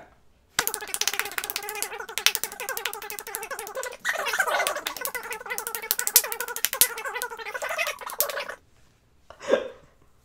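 A rapid run of high-five hand slaps, palm on palm, several a second for about eight seconds, starting about half a second in and stopping abruptly. Under the slaps runs a steady pitched sound that turns wavering about halfway through.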